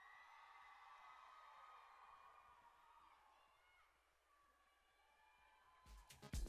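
Near silence: faint hall room tone after the music has faded out, with loud music cutting in at the very end.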